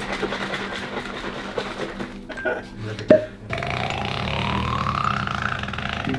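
Tubeless tyre sealant being drawn from its bottle into a syringe: a gurgle whose pitch rises steadily over about two seconds, as with a vessel filling. Before it come light handling clicks and one sharp click.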